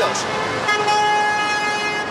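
Car horn sounding one long steady blast that starts about a third of the way in, over the noise of city street traffic.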